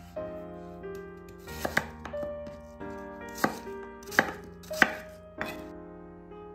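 Kitchen knife chopping peeled apples on a wooden cutting board: about six sharp strikes at uneven spacing, two of them close together, over background music.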